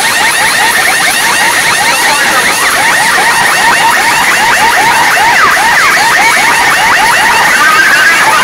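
DJ truck's sound system playing loud electronic music: a rapid run of short rising chirps, about four a second, like an alarm or siren effect.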